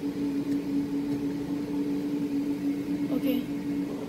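Steady machine hum holding one constant low pitch, with a brief faint wavering sound about three seconds in.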